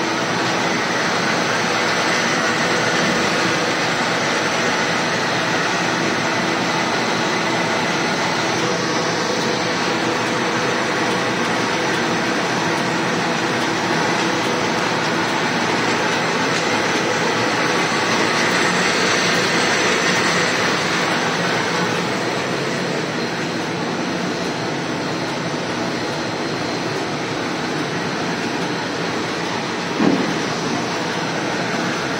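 Automatic cardboard V-cutting grooving machine running, cutting V-grooves in rigid-box boards as they feed through, heard as a dense, steady machine noise. It swells a little about two-thirds of the way through, then eases.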